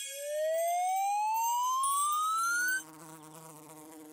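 Cartoon sound effect: a single clean tone gliding steadily upward for nearly three seconds, layered with high sparkling chimes. As it ends, a faint steady buzz of a cartoon bumblebee begins.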